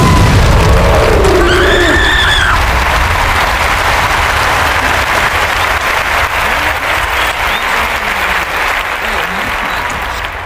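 Crowd applauding and cheering, with a whoop about two seconds in; the applause slowly fades toward the end.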